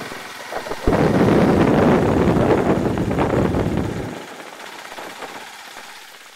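Loud riding noise from a Honda Rebel 250 motorcycle on the road, wind rush and engine together, picked up by a handlebar-mounted camera. It surges sharply about a second in, holds for about three seconds, then eases to a lower steady level.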